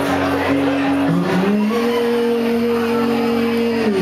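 Live solo acoustic guitar performance: a long sustained note that glides up in pitch a little over a second in, holds steady, and falls away just before the end.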